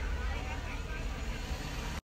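Steady low rumble of car interior noise, with faint voices in the background.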